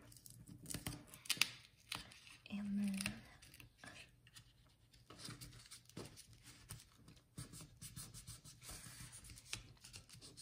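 Card stock and vellum being handled and pressed by hand: scattered rustles, scrapes and small clicks as a folder flap is folded over and smoothed down.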